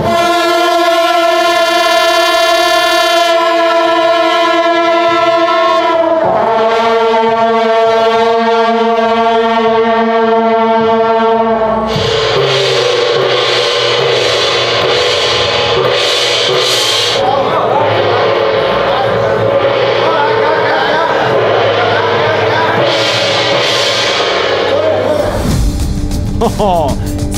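A marching brass band holds long sustained chords, with a short break about six seconds in. About twelve seconds in the brass gives way to percussion: a hand gong, cymbals and drums struck about once a second.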